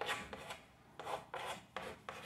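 Writing on a board: a run of short scratchy strokes, about five in two seconds.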